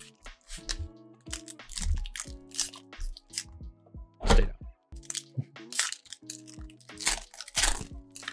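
Crinkling and crackling of foil trading-card pack wrappers and a cardboard blaster box being handled and opened, in a series of short crackles with louder ones about four seconds in and near the end.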